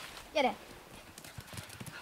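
A dog running over a dry, leaf-covered dirt trail: a quick run of soft footfalls from its paws, following a short spoken call near the start.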